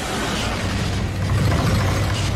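The smoke monster sound effect: a loud, dense mechanical clicking and clattering over a deep rumble.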